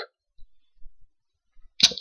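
A pause in a man's talking: near silence with a few faint low bumps, then a short sharp click just before his voice starts again near the end.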